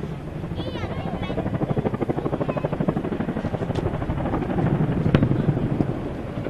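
RAF CH-47 Chinook's tandem rotors beating in a rapid, even pulse as it flies past low. The sound swells to its loudest about five seconds in, where there is a sharp crack, and then begins to fade.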